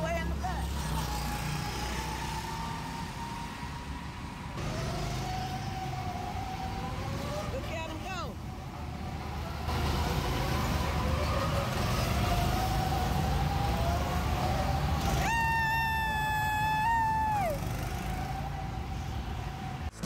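Go-kart engines running with a steady low rumble, over which whining tones slowly rise and fall as karts rev. About three-quarters of the way through, one high whine holds for a couple of seconds and then drops away.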